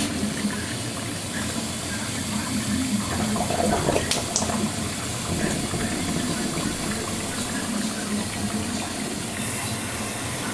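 Hotpoint Ultima WT960G washing machine taking in water for its wool cycle: a steady rush of water filling the drum, with a brief click about four seconds in.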